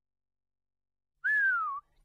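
Silence, then a little over a second in, one short whistled note that slides downward in pitch.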